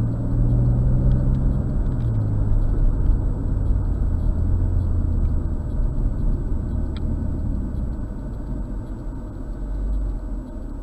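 BMW M240i's turbocharged inline-six engine and tyre noise heard from inside the cabin; the engine note drops in pitch about two seconds in as the car slows, then runs steady and gradually quieter as it coasts up to the cars ahead.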